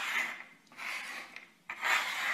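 Small objects slid by hand across a wooden tabletop, making three rasping scrapes of about half a second each.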